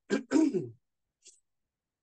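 A man clearing his throat: two short rasps within the first second, the second dropping in pitch.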